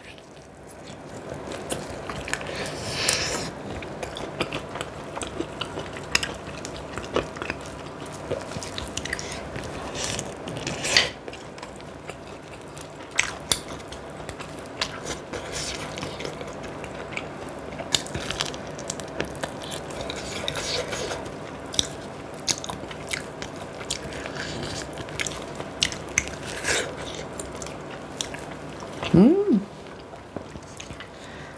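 Close-miked biting and chewing of sauce-glazed fried chicken, with irregular sharp crunches from the fried coating throughout. A brief vocal sound comes near the end.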